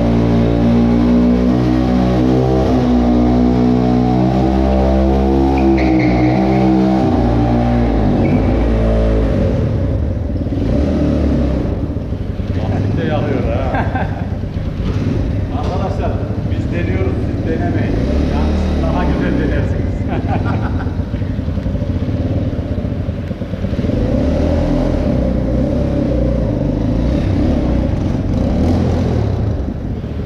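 Kuba TK03 motorcycle's single-cylinder engine, bored up from 50 cc to about 200 cc, running. It holds a steady speed for about the first eight seconds, then runs rougher and more unevenly, with revving.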